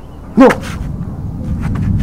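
A man's short, loud vocal exclamation about half a second in, followed by a low, steady rumbling background noise.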